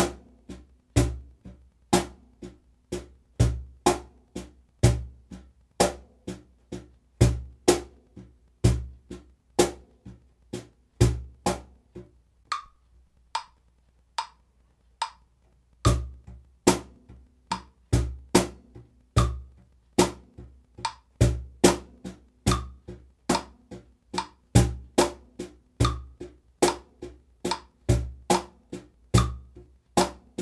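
Wooden cajón played with bare hands in a steady eighth-note groove: crisp high slaps two to a beat, with deep bass tones on beat one and on the off-beat of beat three, over a phone metronome's short beep on each beat. About halfway through, the bass tones drop out for a few seconds, leaving only lighter high strokes, then the full groove returns.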